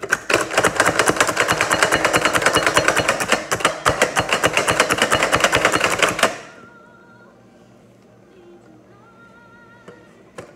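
Hand-pumped plunger food chopper mincing jalapeño: a rapid run of clattering clicks as the plunger is pumped over and over, stopping suddenly about six seconds in.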